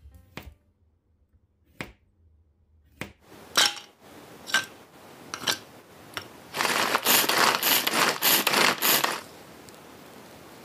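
A kitchen knife slicing a zucchini on a plastic cutting board: a few sharp, separate chops. Then, for about two and a half seconds near the end, a small food chopper chopping shrimp and carrot in its bowl, a loud dense rattle with quick repeated surges.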